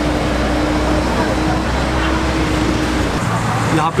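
A nearby motor-vehicle engine running steadily: a low rumble with a steady hum over it, which cuts off about three seconds in.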